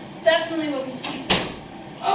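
A voice talking, with a single sharp knock a little past halfway, in a kitchen.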